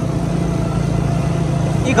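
Steady hum of a vehicle engine with road noise while driving at an even speed. A voice starts right at the end.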